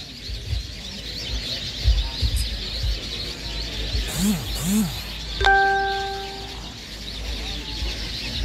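Outdoor ambience of a seated crowd with birds chirping continuously, soft low thumps and murmur. About two-thirds of the way in, a steady electronic-sounding tone starts suddenly and fades away over about a second.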